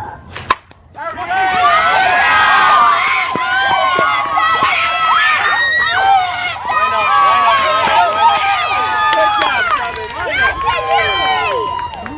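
A single sharp crack of a softball bat hitting a pitched ball about half a second in, then a crowd of spectators and players screaming and cheering loudly without a break.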